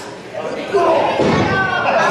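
A heavy thud on the wrestling ring mat, about a second and a quarter in, as the wrestlers grapple on the canvas, with raised voices over it.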